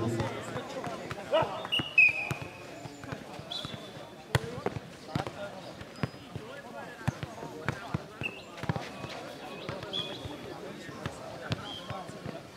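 Futnet ball being kicked and bouncing on a clay court: a string of irregular sharp thuds, with voices in the background.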